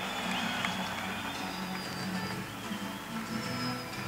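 Faint background music, steady and low in level.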